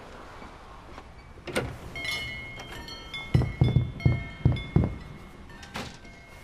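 A shop door opening with a small doorbell ringing, its high tones lingering, then about five dull thumps in quick succession.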